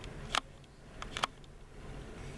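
Handling noise from a hand-held camera being moved in closer: a few short, light clicks, one about a third of a second in and two more close together just after a second, over a low room hum.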